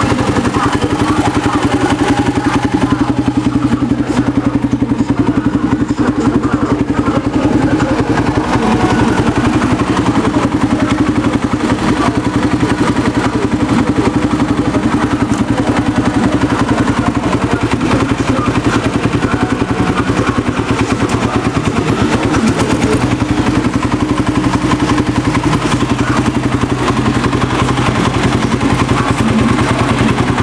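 Polaris Predator 500 ATV's single-cylinder four-stroke engine idling steadily.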